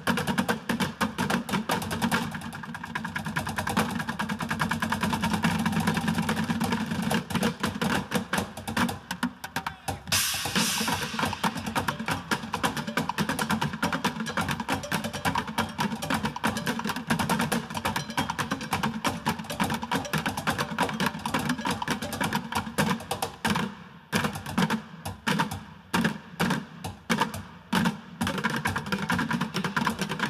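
An ensemble of bucket drummers beating plastic buckets and a bucket drum kit with drumsticks in fast, dense rhythms. There is a short bright crash about ten seconds in. Near the end the playing breaks into sharp accented hits with short pauses between them.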